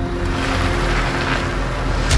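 A car approaching, its engine and tyres giving a rushing noise that swells about a second in, over a held low drone of tense film score.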